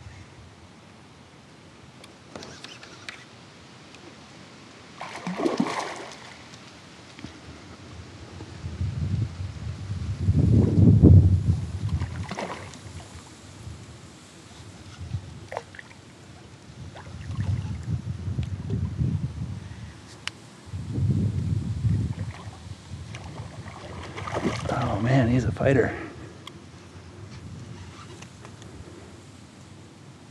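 Water sloshing and splashing around a kayak while a hooked channel catfish is fought on the line, in irregular low bursts that come and go, with a few brief mumbled words near the end.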